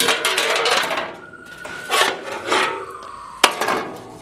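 Rubbing and scraping handling sounds on a workbench, with a sharp click a little before the end.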